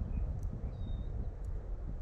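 Wind buffeting the microphone: a steady low rumble, with a short faint high chirp a little before the middle.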